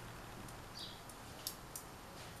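Metal knitting needles clicking faintly a few times as stitches are worked off, the sharpest click about one and a half seconds in. A short high chirp sounds in the background about a second in.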